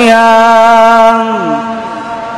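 A young man's voice in melodic Quran recitation, holding one long note within the words 'kutiba ʿalaykumu ṣ-ṣiyām'. The note slides down in pitch about a second and a half in, then fades out.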